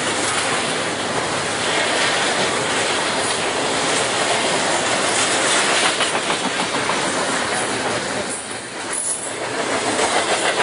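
BNSF double-stack container freight train rolling past close by at speed: a continuous rush of steel wheels on rail with a clickety-clack of wheels over the rail joints. The sound dips briefly near the end.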